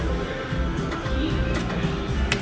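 Music and held electronic tones from a slot machine and the casino around it, as the machine's reels spin through one play and come to a stop.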